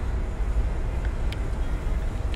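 Steady low outdoor background rumble, with two faint ticks about a second in.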